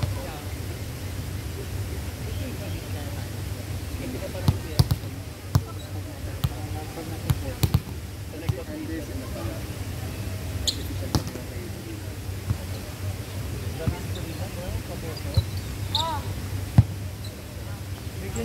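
Volleyball being hit and bouncing: a series of separate sharp slaps, irregularly spaced, the loudest near the end.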